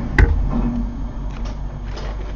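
A single light knock shortly after the start as a hand is put into a nail curing lamp, over a low steady hum.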